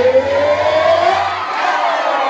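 A man's voice holding one long sung note through a microphone, sliding slowly upward in pitch, with a crowd's voices behind it.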